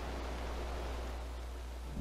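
Steady hiss with a low hum underneath: the background noise of an old film soundtrack, with no other sound.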